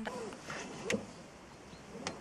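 Low, steady hum inside a small car's cabin, with a faint click about a second in.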